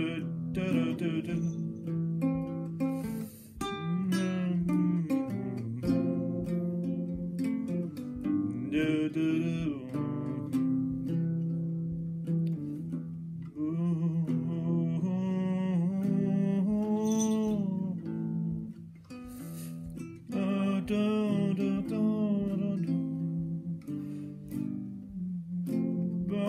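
Acoustic guitar strummed and picked through a chord pattern, with a man's voice humming and singing a wordless melody over it.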